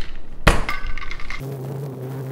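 A metal cocktail shaker full of ice is closed with a sharp clink about half a second in, then ice rattles inside it as the shaking begins. Near the end a man's voice holds one steady note over the shaking.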